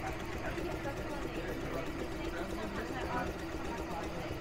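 Tajima multi-needle embroidery machine running at about 470 rpm as it stitches a design onto a cap, a steady mechanical running sound, with faint voices in the background.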